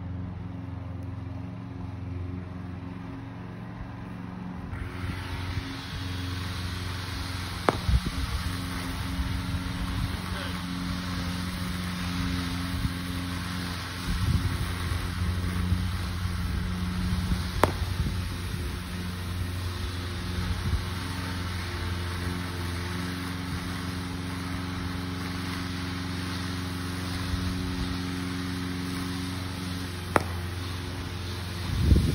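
A motor runs with a steady low hum, joined by a wider hiss about five seconds in. Two sharp cracks about ten seconds apart are a cricket bat striking the ball.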